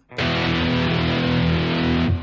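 Heavily distorted electric guitar playing an open E5 power chord, the open low E string with the A string fretted at the second fret. It is struck once, about a fifth of a second in, and rings on steadily.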